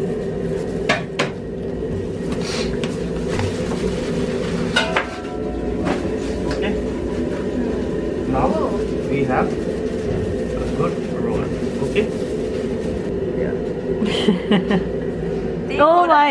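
Steady mechanical hum of a commercial kitchen, with scattered knocks and clatter of utensils and dishes on a stainless-steel counter.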